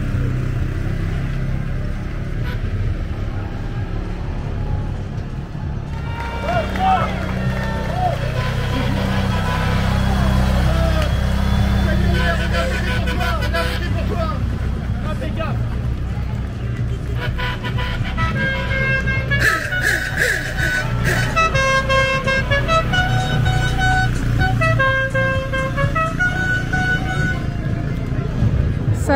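Quad bike engines running at low speed as they tow a line of soapbox carts up the road, a steady low hum under voices. From about two-thirds of the way in, a tune of short held notes plays over it.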